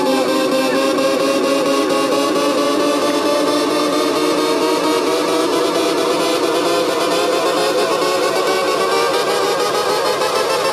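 Live-looped melodic techno led by sustained analog synthesizer chords from a Roland Juno-106, their pitch gliding slowly upward through the second half, over a fast even ticking percussion loop.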